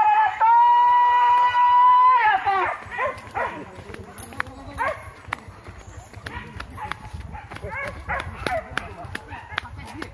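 A loud, drawn-out high call held steady for about two seconds and then falling away, followed by shorter wavering cries and scattered sharp knocks.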